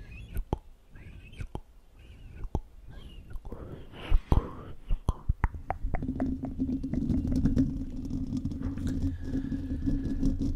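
Wet mouth sounds made right up against a microphone: a run of sharp clicks and pops, with a breathy whisper-like rush around four seconds in. From about six seconds a dense, close crackling of mouth sounds runs over a steady low hum.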